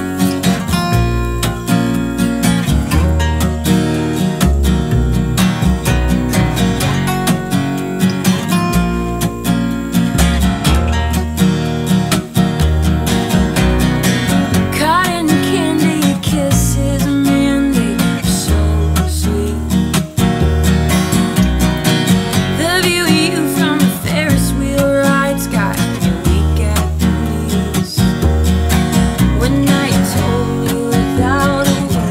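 Acoustic band music: two strummed acoustic guitars over an upright bass, with a woman's voice singing over them in the second half.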